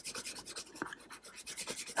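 Soft 5B graphite pencil shading on drawing paper, a faint scratchy rubbing of rapid, even back-and-forth strokes under light pressure.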